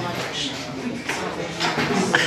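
Indistinct background voices of several people talking at once in a room.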